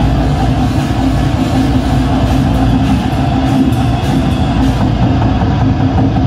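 Live goregrind band playing loudly on stage: distorted electric guitar and bass over a drum kit, one continuous wall of sound.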